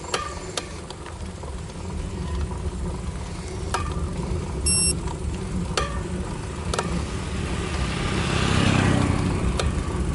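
Ride noise from a camera on a bicycle climbing slowly: a steady low rumble with a handful of sharp clicks, a short high beep about halfway through, and a swell of noise that peaks near the end.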